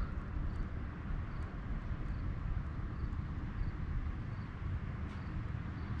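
Outdoor background noise: a steady low rumble with no distinct events, and a faint high chirp repeating a little more than once a second.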